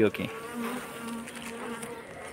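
A swarm of Asian honey bees (Apis cerana) buzzing in a steady low hum, heard close up over the clustered bees.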